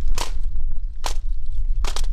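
A rifle drill team's rifles clacking sharply in unison as they are handled, three clacks a little under a second apart, over a steady low rumble.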